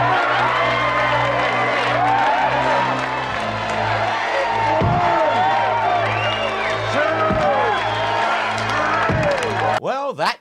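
Wrestling arena crowd cheering and whooping over a sustained music score, with many shouting voices at once. The sound cuts off abruptly just before the end.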